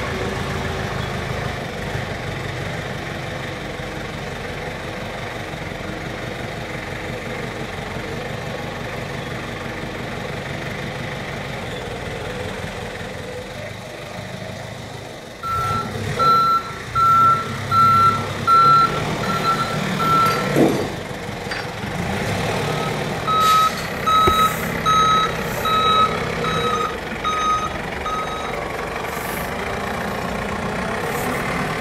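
Forklift engine running throughout, joined about halfway through by a reversing alarm beeping about one and a half times a second in two separate runs, the second slightly lower in pitch, with a single clunk between them.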